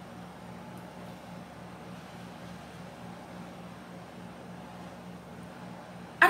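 Quiet, steady room tone: a low hum under a faint even hiss, with no distinct events.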